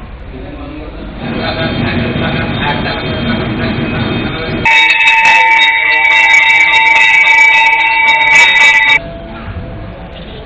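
A temple bell rung rapidly and continuously during puja, a loud steady ringing that starts about halfway through and stops suddenly about four seconds later. Before it, a mix of voices and background sound.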